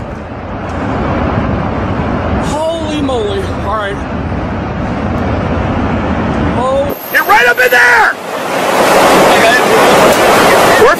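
Strong wind from a close tornado buffeting the microphone: a dense low rumble, with people's voices calling out about three seconds in and again near seven seconds. About seven seconds in the rumble cuts off and a steady hiss takes over.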